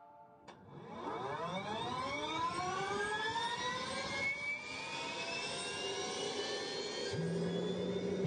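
Jet turbofan engine spooling up: a whine that starts about half a second in and rises steadily in pitch, with a low steady hum joining near the end.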